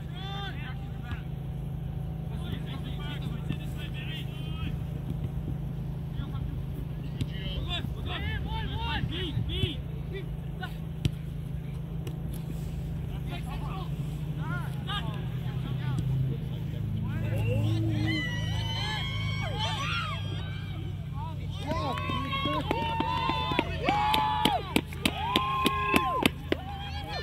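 Distant shouts and calls from players and spectators at a soccer game, getting louder and more frequent in the last ten seconds, over a steady low rumble. A few sharp knocks near the end.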